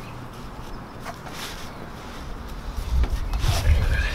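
Parachute suspension lines and a nylon deployment bag being handled as the lines are stowed into rubber bands, with faint rustles. An irregular low rumble comes in about three seconds in and is the loudest part.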